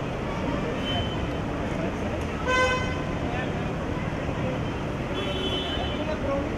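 A car horn gives one short toot about two and a half seconds in. Around it runs a steady rumble of engine and traffic noise, with indistinct voices.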